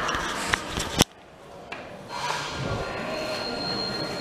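A sharp click about a second in, then an Otis Gen2 elevator's doors sliding open, with a thin steady whine.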